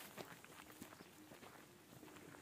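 Faint footsteps of a person walking on a dry dirt track, soft irregular steps over near silence.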